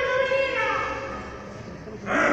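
A high voice holding drawn-out, sung-like notes that slide downward and fade away about halfway through.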